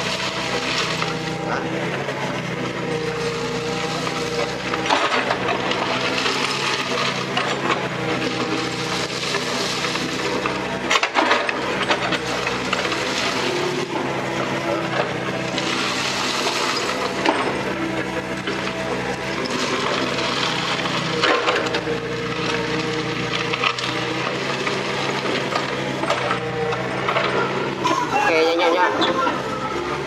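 Mini excavator's diesel engine running under hydraulic load, swelling and easing as the arm and bucket work. Over it, the bucket scrapes and drags crushed stone, the stones grinding and clattering.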